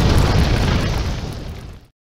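Loud rumbling, crackling explosion noise that fades out over the last second and then cuts to silence just before the end.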